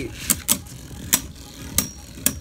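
Two Beyblade Burst tops, God Valkyrie Triple Unite and an R2 Orbit combo, spinning in a clear plastic stadium and clashing: four sharp clacks in about two seconds.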